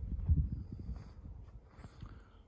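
Footsteps and camera-handling thumps over a low rumble of wind on the microphone, while walking with the camera on an open deck. The thumping is uneven, heaviest just after the start and fading toward the end.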